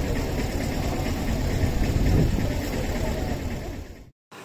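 Outdoor crowd ambience: a steady low rumble with faint voices of people around, cutting off abruptly at the end.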